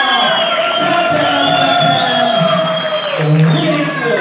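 Boxing hall crowd cheering and shouting, with music mixed in and long high tones that fall in pitch twice.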